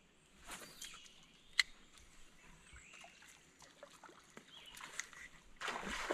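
Spinning rod and reel being fished from a boat deck: a faint swish, then a single sharp click about one and a half seconds in, over quiet lake-side background. A rush of noise builds near the end.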